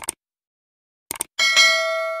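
A short click, then a quick double click about a second in, followed by a bright notification-bell ding that keeps ringing and slowly fades: a subscribe-button sound effect of mouse clicks and a bell chime.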